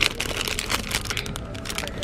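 Clear plastic cellophane wrapping crinkling as a hand grips and turns the packaged item, a quick run of small crackles throughout.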